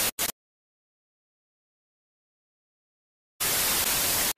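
TV-style static hiss, a glitch transition sound effect, cutting off abruptly just after the start with a brief stutter, then dead silence, then the static starting again suddenly about three and a half seconds in.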